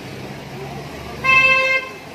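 A single horn toot on one steady pitch, lasting about half a second a little past the middle, over a low steady background hum.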